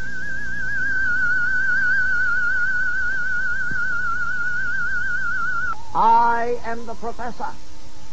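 A single high tone with a fast, even vibrato wobble, held for almost six seconds before cutting off suddenly, in the manner of an electronic or theremin-like title sting. It is followed by a couple of seconds of wavering, sliding pitched sounds.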